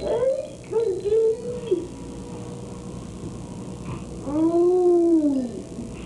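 A baby's voice: two short pitched sounds in the first two seconds, then one longer sound about four seconds in that rises and then falls in pitch.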